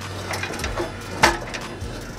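A few metallic clicks and knocks from the engine block being handled on its engine stand, the loudest a single sharp knock about a second and a quarter in.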